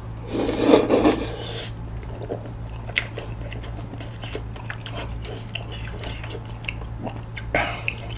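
A mouthful of saucy tteokbokki rice cakes being sucked in with a loud rasping slurp lasting about a second, then wet chewing with many small sticky mouth clicks.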